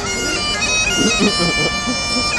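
Great Highland bagpipe played solo: steady drones sounding under a chanter melody that moves from note to note.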